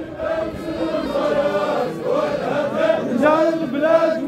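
A large group of men chanting together in unison, holding long notes that waver up and down: the group chant of a Baroud troupe.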